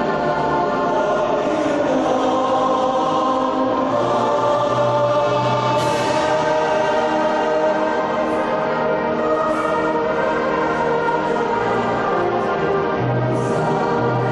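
A choir singing sacred music, accompanied by a concert band of flutes, clarinets, saxophones and brass, at a steady full volume.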